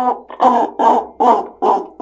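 Chicken-cluck cup: a damp paper towel jerked down a string anchored through the bottom of an upturned plastic cup, the cup amplifying the string's vibration into chicken clucking. About five clucks, a little over two a second.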